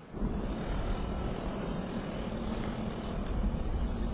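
A motor running steadily with a low drone, mixed with wind-like noise, cutting in abruptly at the start.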